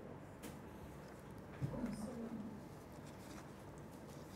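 Quiet room tone with one short, low hum-like sound from a person's voice a little under halfway through, plus a faint click near the start.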